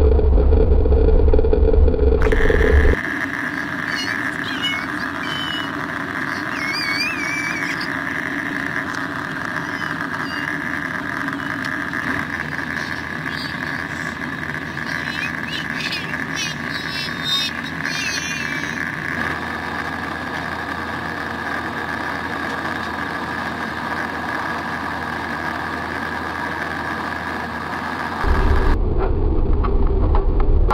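Airbus A320-family jet airliner heard from inside the cabin: a loud low engine-and-runway rumble on the takeoff roll for about the first three seconds, then a steadier, quieter cabin hum with a high whine in climb, and loud low rumble again near the end as the plane rolls out on the runway after landing.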